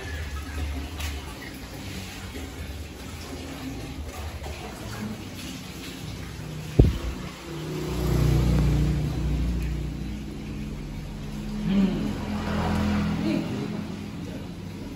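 A vehicle engine running, rising to a louder low rumble for a couple of seconds after a single sharp knock about halfway through, then swelling again near the end, over steady workshop background noise.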